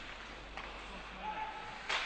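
Faint ice hockey rink sound during play: a steady low hiss of the arena with a light clack about half a second in and a sharper knock near the end.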